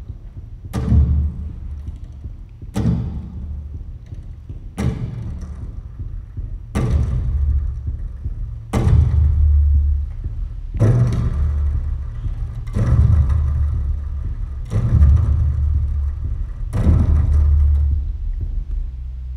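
Double bass sounding deep low notes, one every two seconds, each starting with a sharp attack and ringing on in a sustained low resonance.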